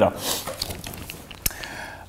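Quiet handling of a playing card as it is taken up from a glass tabletop: faint rustling, with one sharp click about a second and a half in.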